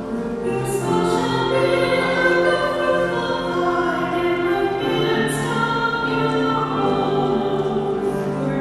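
A woman singing a slow hymn in long held notes, accompanied by piano.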